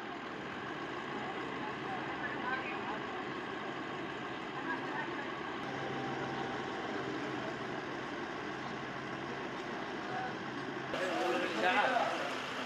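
Outdoor street ambience: a steady low hum of vehicles with faint, distant voices. Near the end a voice starts speaking close to the microphone.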